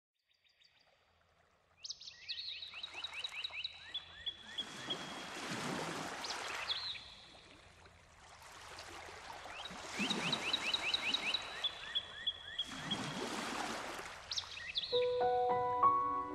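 A nature-sound soundtrack: after a near-silent start, birds chirp in quick repeated rising calls, in bouts, over three slow swells of rushing, water-like noise. Soft sustained music notes come in about a second before the end.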